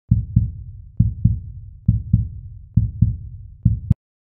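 Heartbeat sound effect: five paired low lub-dub thumps, a little under a second apart, cutting off abruptly near the end.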